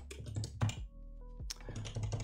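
Typing on a computer keyboard: irregular key clicks, with a short pause about a second in.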